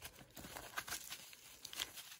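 A hand rummaging in the mesh pocket of a zippered toiletry case, with faint, irregular rustling and small clicks as the items inside are handled.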